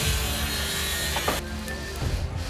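Construction-site noise: a steady, harsh rasping hiss over background music, cutting off about one and a half seconds in.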